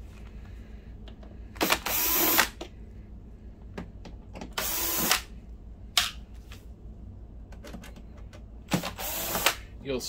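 Cordless drill/driver running in three short bursts, about three seconds apart, backing out the screws of a projector's case, with light clicks of handling in between.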